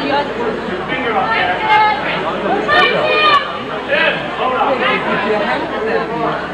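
Overlapping chatter of many voices talking at once, with no single clear speaker.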